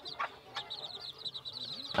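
Bantam chicks chirping faintly: a rapid run of short, high-pitched peeps, with a soft low cluck from the hen near the end.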